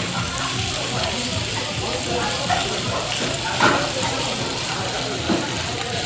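Gopchang (grilled intestines) and onions sizzling with a steady hiss on a hot round metal pan over a tabletop gas flame, as rice is tipped onto it. A couple of short knocks come partway through.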